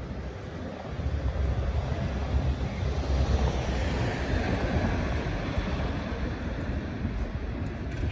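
Street traffic noise: a motor vehicle passing, its rumble swelling from about a second in and slowly fading away.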